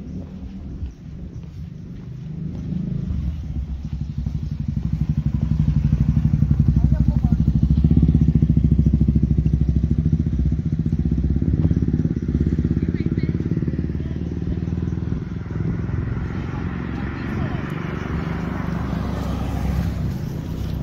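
A motor vehicle's engine running close by with a fast low pulsing, building up after a few seconds, loudest in the middle and then easing off. A rising hiss, like tyres on the road, joins it near the end.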